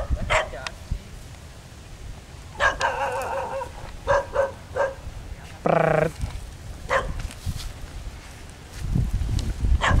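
A dog barking intermittently: short separate barks scattered through the stretch, a quick run of three near the middle.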